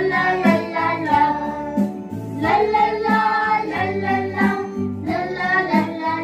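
Children singing a lively "lal lal laa, lal lal laa, lalla lalla laa" action song over instrumental backing music.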